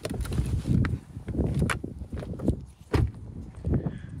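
A person climbing out of a parked car and walking off: irregular low thumps, shuffling and footsteps, with a few sharp clicks.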